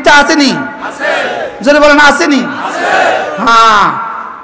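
A man's loud voice chanting in a sermon's sung delivery through a public-address microphone, in several long held phrases that slide up and down in pitch.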